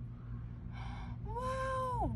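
A woman's long, high-pitched drawn-out "ooooh" of wonder in the second half, rising slightly, held and falling away at the end, after a faint breath. A steady low hum runs underneath.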